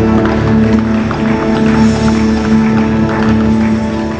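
Worship-band backing track holding a sustained chord at the end of the song, with light, scattered hits on an electronic drum kit over it.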